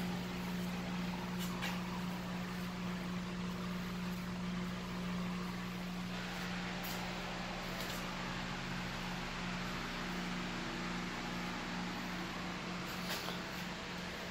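Steady low machine hum with a hiss of moving air over it, from the grow room's equipment running, with a few faint handling rustles.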